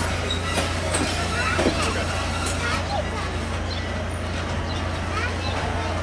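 Passenger coaches of a steam-hauled excursion train rolling slowly past at close range, a steady low rumble under the sound of people talking.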